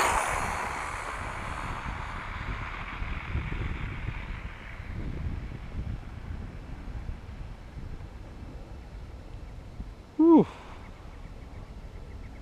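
Traxxas two-wheel-drive electric RC car on a 4S battery speeding away on a high-speed run, the whine of its motor and tyres fading into the distance over the first few seconds. A low rumble of wind follows, and about ten seconds in a short sound falls in pitch.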